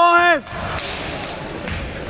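One loud shout from a person, about half a second long at the very start, rising in pitch, held, then falling away. After it, the low murmur of the crowd in a sports hall.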